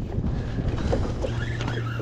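Wind buffeting the microphone and sea water moving against a fishing kayak's hull, with a few faint light clicks.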